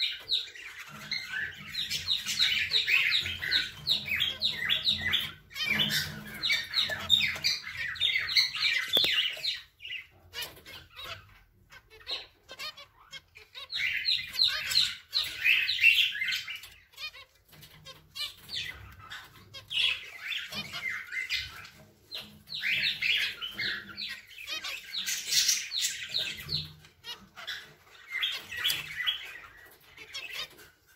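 Zebra finches calling: rapid runs of short, high chirps in bursts a few seconds long, with brief pauses between.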